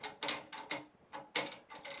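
Several light clicks and rattles from the release button and inner aluminum cone of a survey bipod leg's locking mechanism being pressed and worked by hand.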